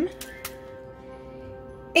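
Background music holding soft sustained notes, with two faint taps early on as wads of tin foil are set down into a pot of water.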